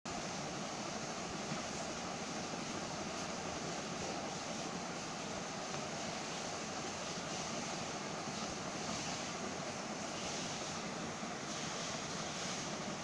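A steady, even hiss of background noise, with no voices and no distinct events.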